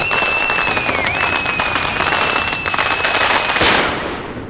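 Film trailer sound effects: rapid crackling like firecrackers, with a steady high whistle over it that dips briefly about a second in, building to a loud swell just before the end.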